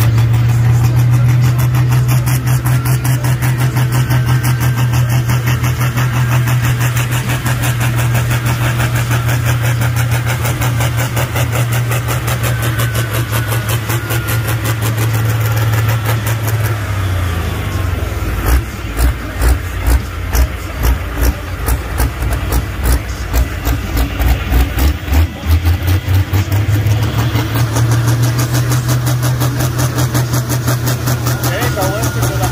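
Pulling tractor's engine idling with a steady deep drone, then rising and falling in quick pulses, about one and a half a second, for roughly ten seconds before settling back to a steady idle near the end.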